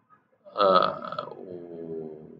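A man's voice making one long, drawn-out vocal sound, starting about half a second in and held with a steady pitch to the end.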